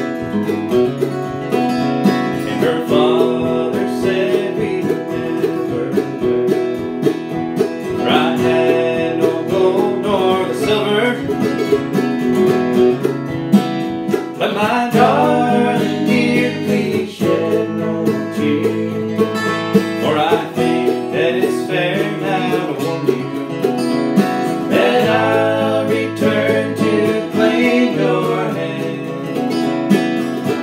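A mandolin and an acoustic guitar playing a slow bluegrass-style ballad together, with a man's voice singing over them at times.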